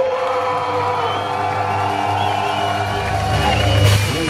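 A live rock band holds a sustained, ringing chord on amplified guitars while the crowd cheers. A low bass rumble swells in near the end as the band builds into the next song.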